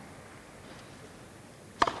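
Low, steady background hush of a tennis crowd around the court, with one short, sharp sound near the end.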